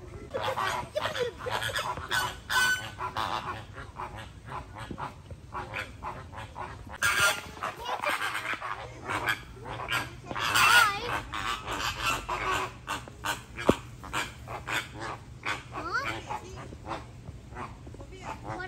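Flock of flamingos honking, goose-like calls repeated over and over and overlapping, in clusters.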